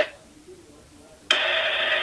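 Open-microphone noise on a video-call audio line. It is a faint hiss at first, then about 1.3 s in a louder steady hiss with a hum cuts in as a participant's microphone opens, just before they speak.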